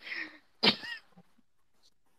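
A person's single short, sharp burst of breath or voice, preceded by a faint breathy sound.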